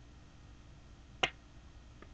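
A single sharp click about a second in, from handling an open plastic DVD case.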